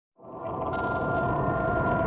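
A sustained electronic drone with a steady pitched tone over a hiss, swelling in over the first half second and then holding level.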